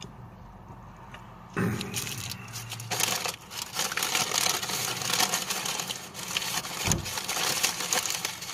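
A throat clearing about two seconds in, then continuous crinkling and rustling of paper fast-food packaging, made up of many quick crackles.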